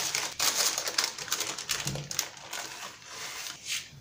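Baking paper crinkling and rustling as it is peeled off a log of chilled cookie dough, busiest in the first half and lighter toward the end.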